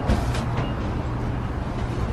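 Steady outdoor street ambience: a low rumble of traffic or a nearby running vehicle, with a couple of light knocks near the start.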